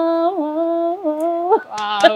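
A woman singing unaccompanied, holding a long vowel on a steady pitch with small upward flicks of ornament about every half second, until it ends about a second and a half in. Near the end another voice and clapping begin.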